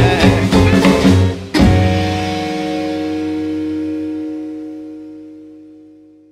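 Rockabilly band with acoustic guitar and upright bass playing the song's closing bars, then hitting one final accented chord about a second and a half in that rings on and slowly fades away.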